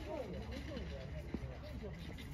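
Faint voices of people talking in the background over a steady low rumble.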